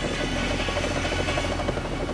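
Steady low engine and road rumble inside a moving car's cabin.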